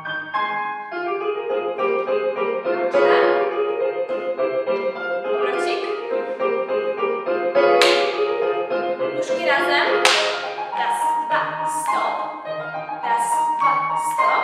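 Piano music playing as ballet class accompaniment, with sustained chords and sharp accented notes that come more often in the second half.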